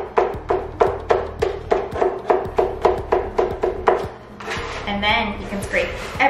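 Handheld metal chopper blade striking garlic on a cutting board over and over, about three quick chops a second, stopping about four seconds in.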